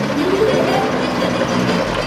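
A lifted Jeep on oversized tyres driving on pavement: engine and tyre noise, the engine's pitch rising in the first second, with music faintly underneath.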